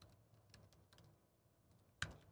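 A few faint keystrokes on a computer keyboard, clustered in the first second, as a short password is typed.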